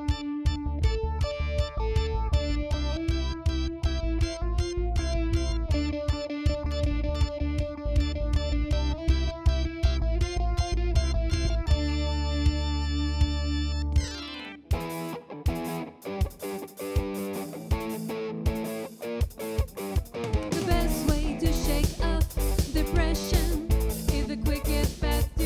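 A pop band playing live: electric guitar over a steady beat with bass. Just past halfway a held chord ends in a falling sweep, and the music moves into a busier section.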